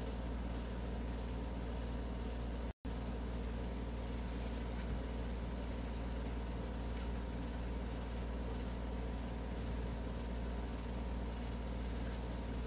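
A steady low background hum, with a few faint ticks. It cuts to silence for a moment about three seconds in.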